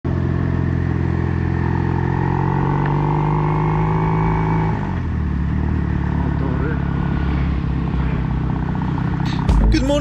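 Motorcycle engine running steadily while riding, heard from the bike itself, with a change in the engine note about halfway through.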